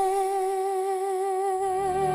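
Female singer holding one long note with a gentle vibrato on the Korean word "이젠" ("now") in a ballad, with soft accompaniment that fills out about one and a half seconds in.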